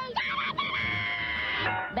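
A cartoon character's long, high-pitched held scream, lasting about a second and a half and cutting off sharply, over background music.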